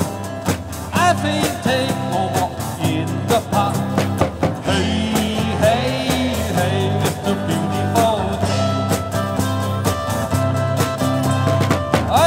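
Live band playing an upbeat pop-rock song on electric guitars, bass and drums, with a steady drumbeat throughout.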